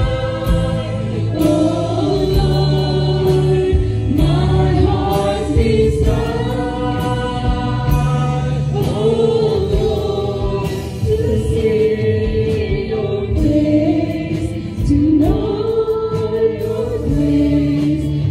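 A live praise and worship song: several singers singing the melody together over a band with a steady beat and bass.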